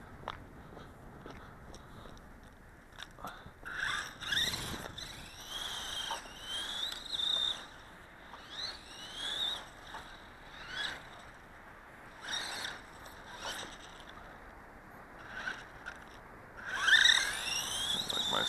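Electric motor and gears of a 1/18-scale Dromida DB4.18 RC desert buggy whining in repeated short bursts, each rising in pitch as the throttle is applied and then dropping off. A louder burst near the end holds a steady high whine.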